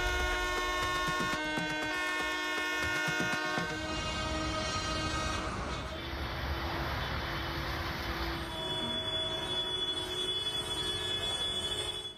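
Tractor horns blaring in long held blasts over engine and street noise from the convoy. The blasts sound for the first few seconds, give way to a noisier stretch, and start again near the end.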